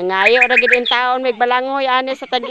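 A voice chanting one short syllable over and over, in quick succession and without a pause.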